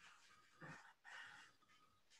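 Near silence: room tone with two faint, brief noises in the middle.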